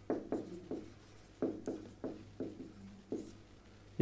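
Marker pen writing on a whiteboard: a quick run of about a dozen short strokes as a word is written out.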